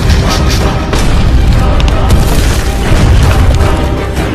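Field artillery firing: deep booms over loud dramatic music.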